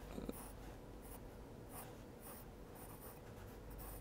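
Pencil drawing on a sheet of paper: faint scratching in a series of short curved strokes.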